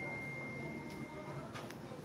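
A faint, steady high-pitched tone over low background noise, stopping about one and a half seconds in, followed by a few faint clicks.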